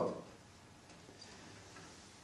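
The end of a man's spoken word, then near silence: room tone with a faint click about a second in.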